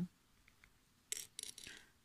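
Thread rubbing and rasping against fingers as a needle-tatting knot is worked and pulled, in a few short scratchy strokes about a second in that fade away, after a couple of faint ticks.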